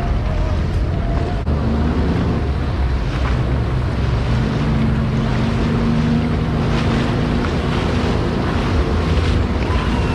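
Personal watercraft under way at speed: its engine runs steadily under the rush of churning water from its wake, with wind buffeting the microphone. A steady engine tone stands out in the middle of the stretch.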